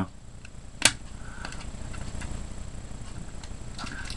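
Fingers prying at the small toothpick slotted into a Tool Logic survival card: one sharp click about a second in, then faint rubbing and a few small ticks.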